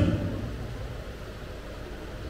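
Steady low hum and faint hiss of a hall's background noise, with the echo of a man's voice dying away in the first second.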